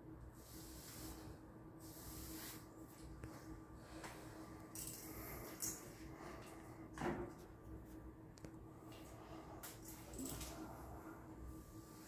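Faint scuffs and swishes of a paintbrush on an extension pole being worked and handled while cutting in paint along a wall-ceiling line, with one sharper knock about seven seconds in, over a faint steady hum.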